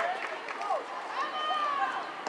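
Several voices shouting and calling out across a football pitch during play, in drawn-out calls that rise and fall in pitch.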